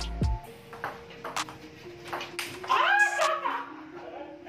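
Table tennis ball clicking off paddles and table in a rally, short sharp clicks about every half second, over background music.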